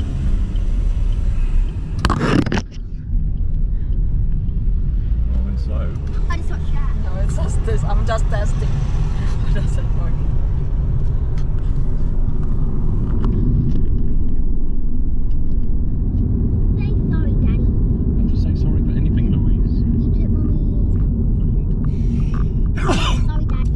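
Steady low road and engine rumble of a moving car heard from inside the cabin, with a brief loud noise about two seconds in. Faint voices are heard under the rumble.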